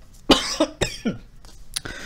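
A man's short breathy laugh: a few quick bursts of air in the first second, then dying away.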